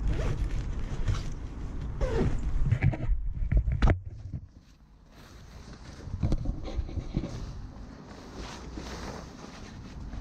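Close rustling and scuffing of clothing and gear, with footsteps on rubble and weeds, over a deep rumble of wind on a body-worn action camera's microphone. The rumble and rustling cut out suddenly about four seconds in, then return more softly.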